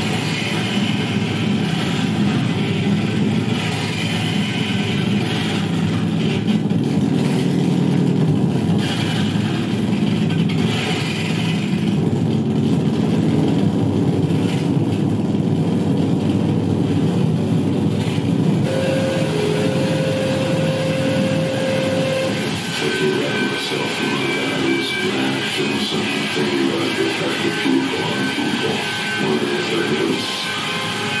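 Harsh noise electronics from a chain of effects pedals through an amplifier: a loud, dense, unbroken wall of rumbling noise, shifting as the pedals are worked by hand. A single steady high tone rides over it for a few seconds past the middle.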